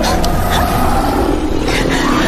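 A horde of monstrous beasts stampeding, heard as a steady, heavy rumble of many running feet.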